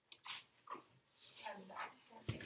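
Faint, indistinct voices murmuring: a few short vocal sounds with gliding pitch.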